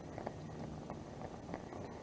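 Faint, steady hiss of a Heat Hog 9,000 BTU portable propane heater burning at a turned-down setting, with a few faint ticks.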